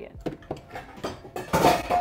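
Kitchen utensils and containers clinking and knocking on a counter as they are handled, with a louder clatter lasting about half a second near the end.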